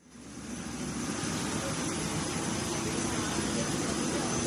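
Steady airliner cabin noise, an even hum and rush from the plane's air and engines, fading in over about the first second.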